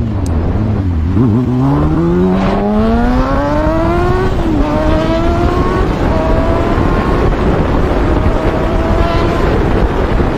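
Sport motorcycle engine accelerating hard: its pitch climbs steadily, drops with an upshift about four and a half seconds in, then pulls on at high revs. Heavy wind noise on the microphone.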